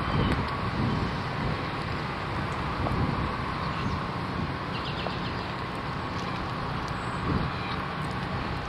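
Steady outdoor ambience of wind rumbling on the camera's microphone, with a few faint high chirps about five seconds in.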